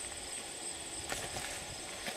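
Footsteps on grass, a few soft irregular steps, over a steady high-pitched trill of crickets.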